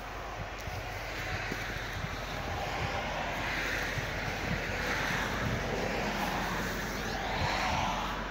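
Distant motor-vehicle noise with wind: a steady rush that swells and fades twice, around the middle and again near the end.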